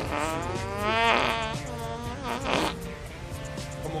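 A long, wavering fart, followed by a second shorter one about two and a half seconds in, over background guitar music.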